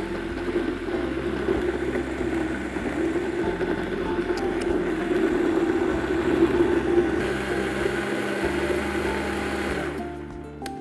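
Vitamix high-speed blender motor running steadily as it purees cooked broccoli and stock into a smooth soup, stopping at the very end.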